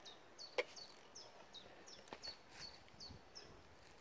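A small bird calling faintly: a steady series of short, high chirps, each falling in pitch, about two or three a second. One sharp click sounds about half a second in.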